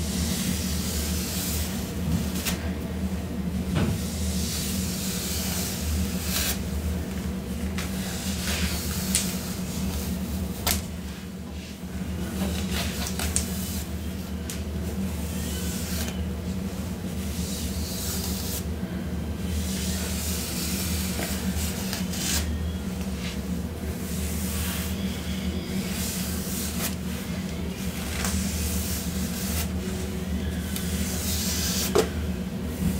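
A comb drawn again and again through long hair close to the microphone, each stroke a short rustling hiss, with a steady low hum underneath.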